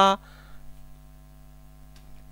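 The last syllable of a man's spoken word cuts off right at the start, then a faint, steady electrical hum made of several constant tones runs on with no change.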